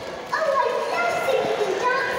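A high-pitched child's voice talking and calling out in a large echoing hall, starting about a third of a second in.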